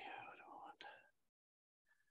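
A faint whispered voice for about the first second, then dead silence.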